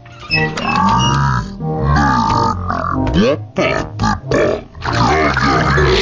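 A cartoon pig's grunt, then the cartoon's voices and background music slowed down and dropped in pitch into deep, drawn-out sounds.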